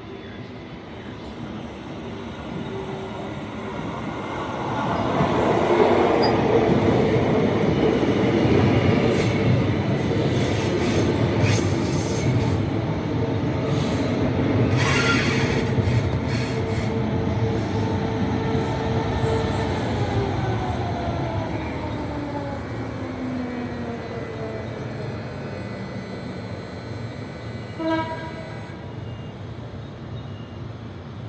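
Queensland Rail electric multiple-unit trains (an SMU and an NGR) arriving: wheel and rail noise with a steady motor whine builds over the first few seconds. After about twenty seconds the whine falls in pitch as the train slows. A brief high hiss comes about halfway, and a short beep sounds near the end.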